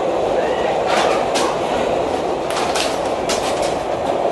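Subway train running, heard from inside the car: a steady, even rumble, with a few sharp clacks from the wheels on the track spread through it.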